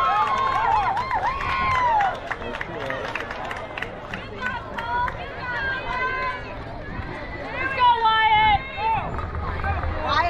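Young children's voices calling out across a ballfield, with long drawn-out high calls near the start and shorter calls later, and scattered sharp clicks.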